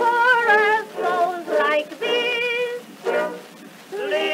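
Early acoustic-era record of a popular song from 1917: a voice sings short phrases with a strong, wide vibrato over a small orchestra, the sound thin with no deep bass. The singing dips to a quieter gap near the end before the next phrase comes in.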